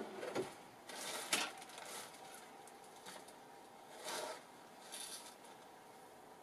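Hands rummaging through a pot of fabric and ribbon scraps: soft rustling in a few short bursts, about a second in and again around four and five seconds in.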